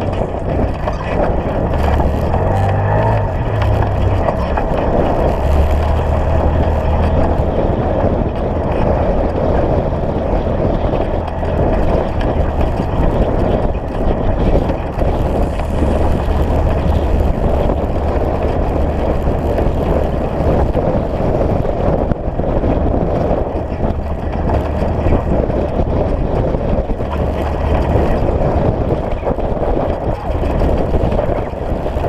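Side-by-side UTV driving along a dirt road: its engine running steadily under way over a constant rumble of tyres and road, the engine note rising briefly a few seconds in.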